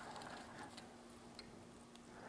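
Faint, scattered light clicks and ticks of small fly-tying tools being handled as a whip-finish tool is picked up, over a faint steady hum.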